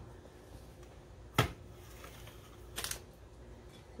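Kitchen items, a can and a bottle among them, set down on a granite countertop: one sharp knock about a second and a half in, then a few lighter knocks near three seconds, over faint room tone.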